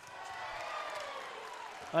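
Faint, steady crowd murmur in a basketball arena during live play.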